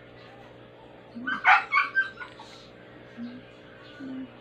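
A quick run of short, loud animal calls over about a second, starting about a second in, over a faint steady hum.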